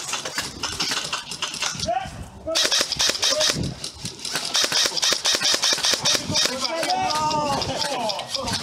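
Airsoft rifles firing in rapid bursts, a fast run of sharp clicks, with players shouting over them.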